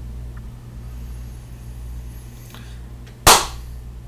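One sharp hand clap about three seconds in, loud and short, over a steady low hum of room noise picked up by a laptop's built-in microphone.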